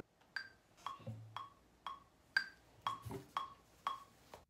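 Faint metronome click track: eight short wood-block-like ticks at a steady tempo of about two a second.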